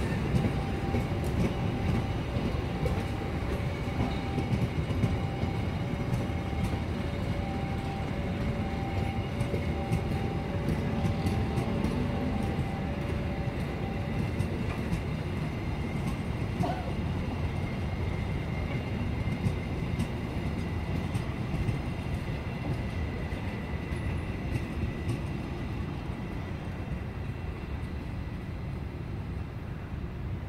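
Freight train's cargo wagons rolling past on the rails, with a faint steady tone over the first half. The sound grows fainter near the end as the train moves away.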